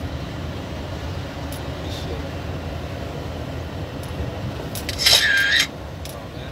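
Steady low rumble of engine and road noise heard from inside a moving vehicle's cab. About five seconds in, a loud, high-pitched hiss lasts about half a second, then cuts off.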